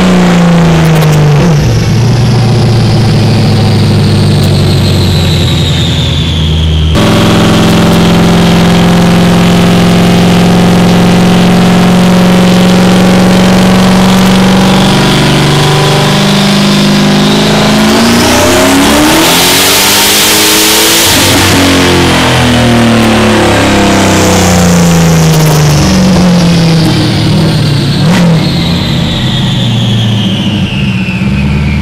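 Turbocharged LS1 V8 of a 1999 Camaro Z28 running on a chassis dyno at 10 psi of boost. Its revs fall, jump abruptly, hold steady, then climb in a full-throttle pull to a loud rush of noise about two-thirds through. After that the revs wind down.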